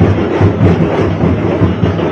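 Loud, fast procession drumming, densely packed beats over a wash of crowd noise.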